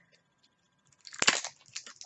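A small plastic eyeshadow container being forced open: a quick run of sharp clicks and crackles about a second in, the loudest near the start, with smaller clicks after.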